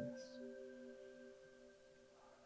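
Faint ambient background music: a few soft, held tones that slowly fade.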